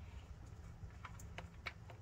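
Quiet handling with a few faint, sharp clicks about halfway through and near the end, as the oil drain plug is turned out by gloved fingers on its last threads.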